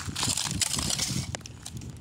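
Thin plates of broken ice crunching and clinking as a hand moves through them, with a sharp click a little after a second in; then it goes quieter.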